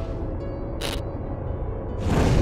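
Channel intro music: a low sustained drone with faint held tones, and a brief high swish about a second in.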